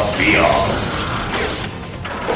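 Cartoon sound effect of machinery: a dense, rapid mechanical whirring and ratcheting, as of an armoured, robot-like creature's mechanism, easing off toward the end.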